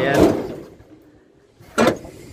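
A single short, sharp clunk near the end from the manually lowered tilt cab of a Fuso Fighter truck, typical of the cab settling and latching down.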